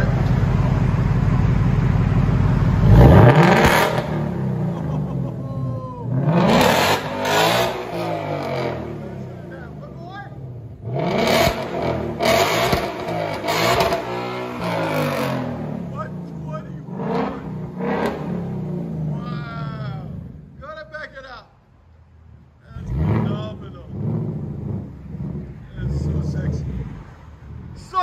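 Ford Mustang Mach 1's 5.0 Coyote V8 through a resonator-delete exhaust, with the factory active valves open in track mode. It idles steadily, gives a sharp rev about three seconds in, then revs up and down over and over. The revs are loud enough to read 116 on a decibel meter.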